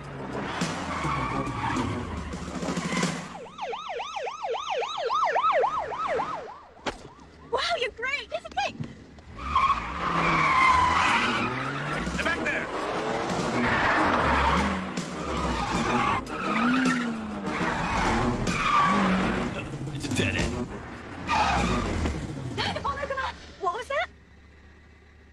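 Car-chase soundtrack: car engines revving and tyres skidding, with a fast-warbling siren about three to six seconds in.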